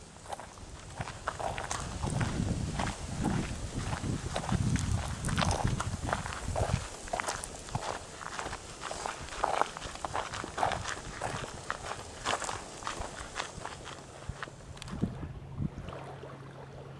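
Footsteps of a person walking along a sandy dirt track, about two steps a second. A low rumble runs under the steps in the first half.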